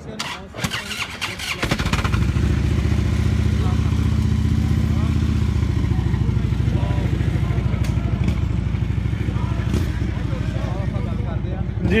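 Police motorcycle engine starting about two seconds in, then idling steadily with a low, rapid pulsing beat.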